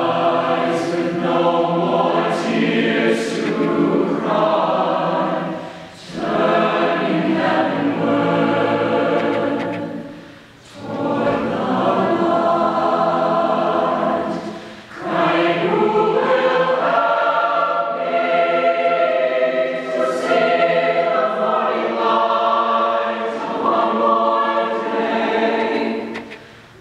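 Mixed choir of women's and men's voices singing in sustained phrases, with brief dips between phrases about 6, 10 and 15 seconds in.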